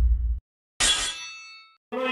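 Logo intro sound effect: the tail of a deep boom dies away in the first half-second, then a single metallic clang rings out and fades over about a second.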